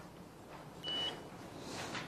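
A single short electronic beep, one steady high tone lasting about half a second, about a second in, over quiet room tone.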